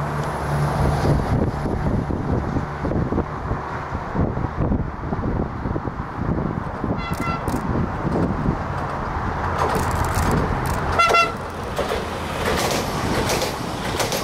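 Siemens Desiro electric multiple unit sounding two short horn toots as it approaches, the first about seven seconds in and the second about four seconds later, over a steady rumble. The running noise of the train grows near the end as it draws close.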